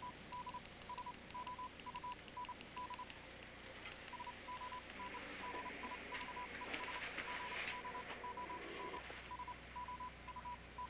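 Faint Morse code signal from a radio set: a single steady tone keyed in short and long beeps, with a break of about a second near three seconds in.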